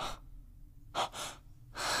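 A person breathing in quick gasps: a short breath at the start, two quick ones about a second in, and a louder breath near the end.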